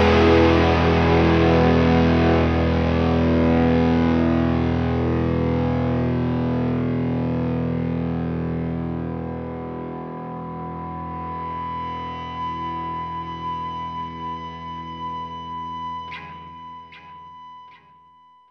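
The final chord of a rock song on distorted electric guitar, ringing out and slowly fading. A steady high tone holds over the second half of the decay, and a few clicks come near the end before it dies away.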